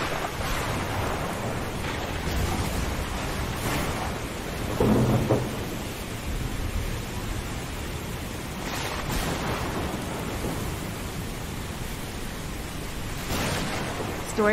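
Steady rain with low, rumbling thunder, and a louder thunder swell about five seconds in.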